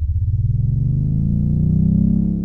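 A deep synthesizer swell that slowly rises in pitch and grows louder, the build-up of a TV programme's opening theme.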